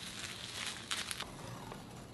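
Plastic bubble wrap rustling and crinkling as hands roll and press an item inside it, with a couple of sharper crackles about a second in.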